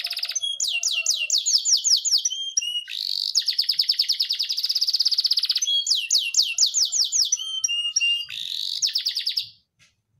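Domestic canary singing a long, loud song: fast trills alternate with runs of quick sweeping notes, and the song breaks off about half a second before the end.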